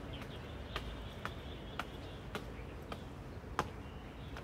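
Footsteps of shoes on a paved path, a sharp step about every half second, the last one the loudest, over faint bird or insect chirps and a steady low outdoor background.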